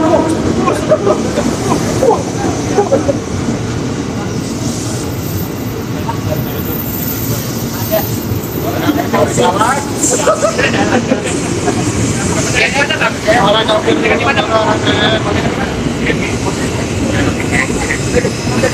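KRL Commuter Line electric multiple unit running in along the platform close by: a steady rumble of wheels and traction motors.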